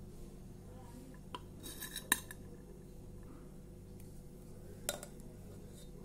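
A metal spoon clinking and scraping against a metal pot as cooked rice is scooped out and served: a short cluster of clinks about two seconds in, and one more near the end.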